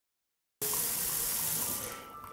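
Water running from a kitchen faucet into a stainless steel sink, starting suddenly about half a second in and fading away near the end.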